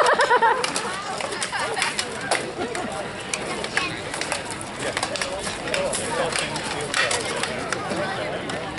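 Rattan swords knocking against shields and armour in SCA armoured combat: sharp, irregular knocks scattered through, over the talk of onlookers and fighters' voices.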